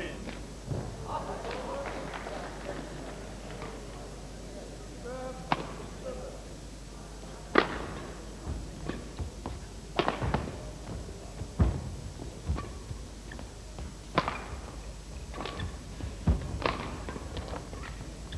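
Badminton rally: a racket strikes a shuttlecock with sharp hits, one every second or two, beginning about five seconds in, over a steady murmur in an indoor hall.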